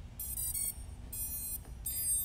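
Brushless drone motors beeping as the BLHeli_S ESCs restart after being disconnected from the configuration software: three short electronic tones in under two seconds.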